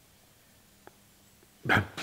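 Near silence: quiet room tone with one faint click a little under a second in, then a man's short spoken word near the end.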